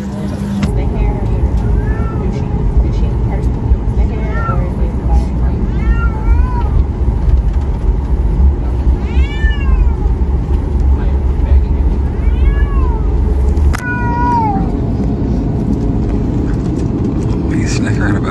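A series of about seven short meows, each rising and then falling in pitch, over the steady low rumble of an airliner cabin; the rumble shifts about fourteen seconds in.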